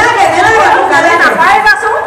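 Speech: continuous talking, with several voices chattering.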